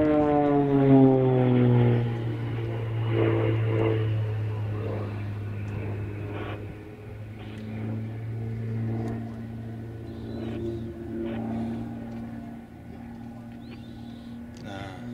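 Propeller aerobatic aircraft's piston engine heard from the ground. Its note falls in pitch over the first two seconds, then holds steady while growing fainter.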